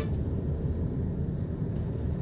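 Steady low road and engine rumble inside a car driving along a highway.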